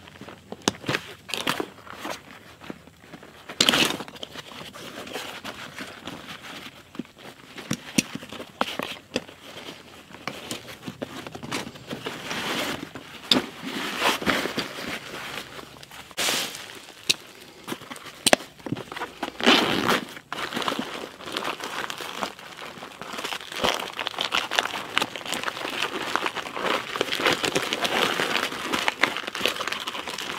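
Hands rummaging in a nylon pack: fabric and webbing rustling with scattered sharp clicks. Near the end comes a denser crinkling as a plastic-wrapped MRE is drawn out of a zippered pouch.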